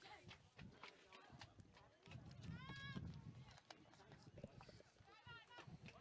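Near silence on an outdoor playing field, with faint distant shouts from players: one call about three seconds in and a shorter one near five seconds.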